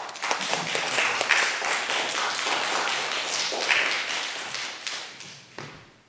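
Small audience applauding, a dense patter of claps that dies away over the last second or two.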